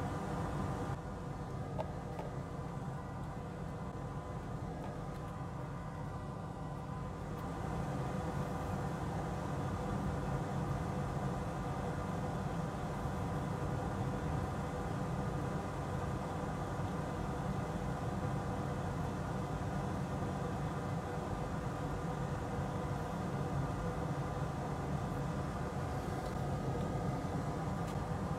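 Steady low machine hum with several faint steady tones above it. A light hiss grows slightly louder about seven seconds in.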